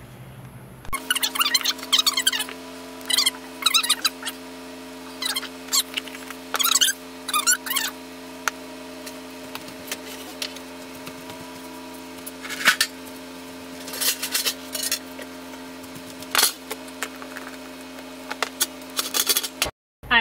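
A small spoon scraping and tapping in plastic jars of powdered fibre-reactive dye, heard as repeated short squeaky scrapes and clicks, over a steady hum that starts about a second in.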